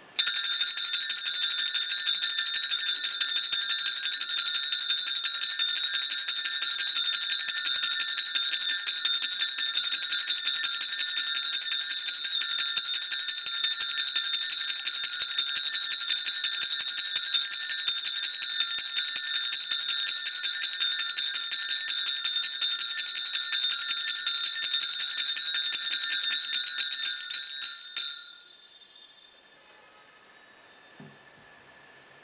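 Cluster of altar bells shaken continuously, a loud, bright, rapid jingling that starts abruptly, holds steady, and dies away just before the end. The bells mark the blessing with the Blessed Sacrament in the monstrance at Benediction.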